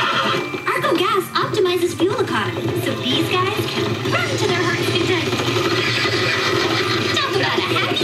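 An FM radio advertisement playing: voice-like sounds with sound effects over music and a steady low hum.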